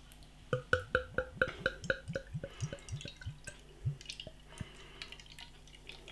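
Beer glugging out of a glass bottle as it is poured into a tilted weizen glass: a quick even run of glugs, about four a second, each rising in pitch, thinning to a few last glugs about four and a half seconds in.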